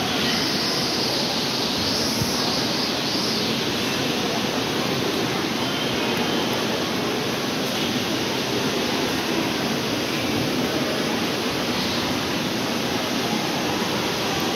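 Steady, even background noise of a busy tiled public hall, with no single sound standing out.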